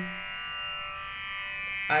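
A steady musical drone of many sustained tones fills a pause between sung Sanskrit verse lines. The singing voice trails off just after the start and comes back in near the end.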